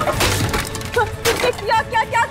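Dry wooden logs thrown down onto a heap of wood and straw: a couple of sharp woody knocks and clatters, over background music. A woman's voice cries out near the end.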